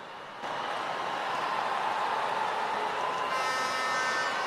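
Crowd noise from a church congregation reacting to a punchline. It swells in about half a second in and then holds steady.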